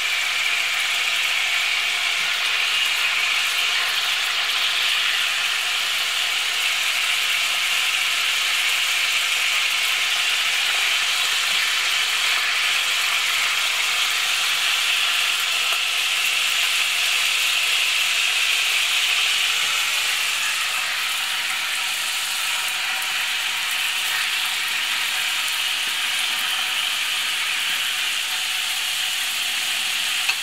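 Hot oil sizzling and crackling steadily in a frying pan as kupaty sausages fry.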